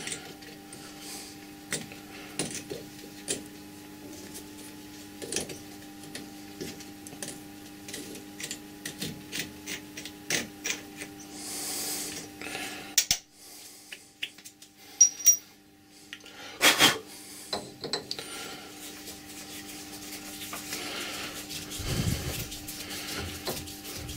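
A steel thread tap being turned by hand out of a freshly tapped copper bar held in a lathe chuck: small clicks and scraping of metal on metal as it unscrews, with one louder clack about two-thirds of the way through.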